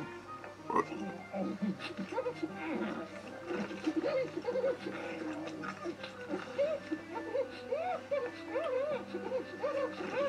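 Cartoon soundtrack: light background music under a cartoon character's wordless vocal noises, many short squeaks that rise and fall in pitch.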